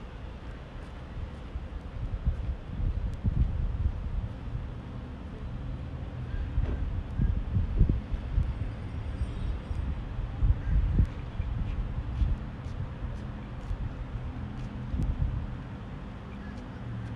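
Wind rumbling and gusting on the microphone, with a steady low hum of a vehicle engine in the background.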